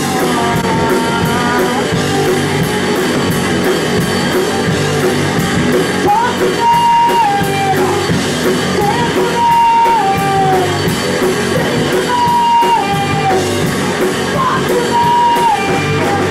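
Female-fronted punk rock band playing live: drum kit, electric bass and electric guitar through amplifiers, with a woman singing. From about six seconds in, her sung phrases repeat every few seconds, each ending on a held note that steps down.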